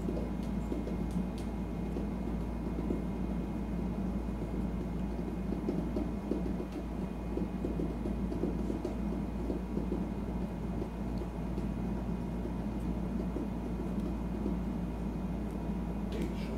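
Steady low rumble and hum of a running household cooling appliance, with a few faint clicks of small plastic pieces being handled.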